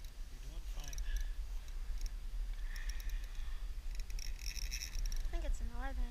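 Brief, indistinct voices, one near the start and one near the end, over a steady low rumble.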